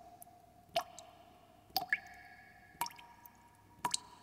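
Water-drop sound effect: single drops plink about once a second, and each leaves a clear ringing tone that lasts until the next drop.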